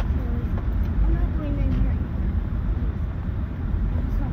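Steady low road and engine rumble inside a moving car's cabin, with a voice talking indistinctly over it.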